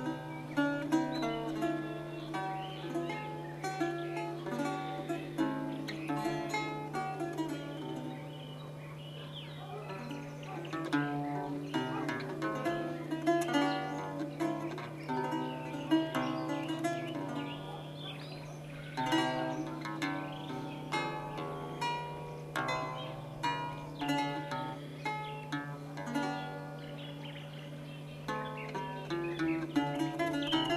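Solo lute playing: a plucked melody with chords, in phrases that ease off into quieter stretches before picking up again. A steady low hum runs underneath.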